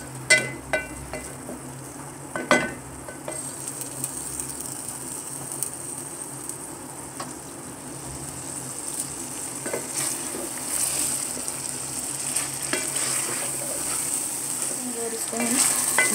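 Potato fingers and masala sizzling in hot oil in a metal pot while being stirred with a wooden spatula, which knocks against the pot a few times in the first three seconds. The sizzling grows louder in the second half.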